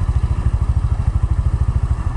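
Small motorbike engine running with a steady, rapid low throb, with a light hiss of road and wind noise under it.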